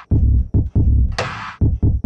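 Trap drum-machine beat played through the TrapDrive distortion plugin: loud, heavily driven 808 bass and kick hits in a quick pattern, with a single sharp snare-type hit a little over a second in.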